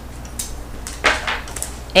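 Tape being pulled off a roll and torn off, with a short burst of noise about a second in.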